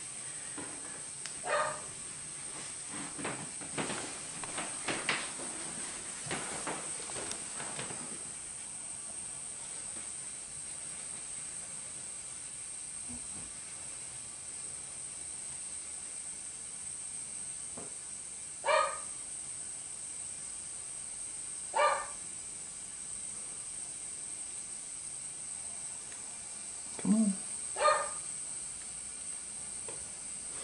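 Soft rustling and clicks of steel feeding tongs and a thawed rodent being worked in a plastic rack tub of wood-chip bedding over a steady high hiss, then four short, high barks spaced out through the second half.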